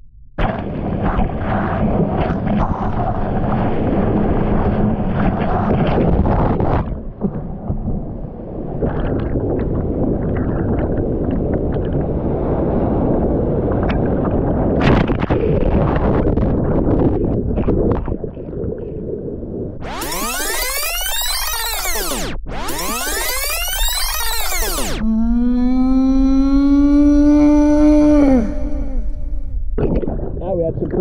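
Loud, muffled roar of churning whitewater as a breaking wave pulls a bodyboarder and his camera under. Later come two odd sweeping whooshes, then a pitched tone that slides downward, which sound like added effects.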